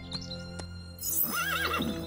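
A short horse whinny from a cartoon unicorn, about a second and a half in, rising and falling once. It is preceded by a brief high shimmer and plays over soft background music.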